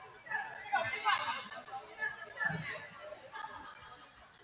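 Indistinct voices of players and spectators, echoing in a gymnasium, with one low thump about two and a half seconds in and a short high squeak near the end.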